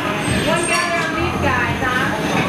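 Steady rushing noise of gas burners in a glass-blowing studio (the glory hole and a hand torch), with indistinct voices talking over it.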